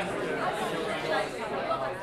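Crowd chatter: many people talking at once at a steady level, with no single voice standing out.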